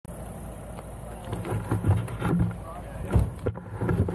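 Rubbing and knocking handling noise from a helmet-mounted camera being held and moved, over a low rumble, with some muffled talk.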